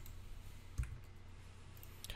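Computer mouse clicking twice, once at the start and once a little under a second in, the second with a dull low knock, over a faint steady low hum.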